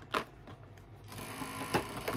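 Fingers picking and scratching at the perforated door of a cardboard advent calendar. There is a sharp click just after the start, then a steady scraping from about halfway through.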